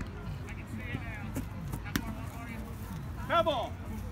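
A rubber kickball kicked once, a single sharp smack about two seconds in, amid players' chatter on the field. A loud shout comes near the end.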